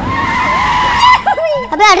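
A tyre-screech sound of a vehicle braking hard, with a steady high squeal that lasts about a second and then stops, followed by a voice calling out "arre".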